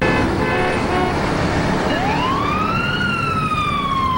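Street traffic noise with a siren that wails up over about a second, starting about two seconds in, then slowly falls.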